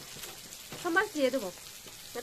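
Vegetables frying in oil in a pan, a steady sizzle. A short bit of voice comes about a second in.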